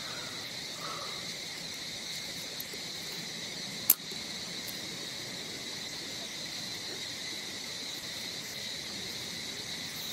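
Steady, unbroken high-pitched drone of insects in the trees, with a single sharp click about four seconds in.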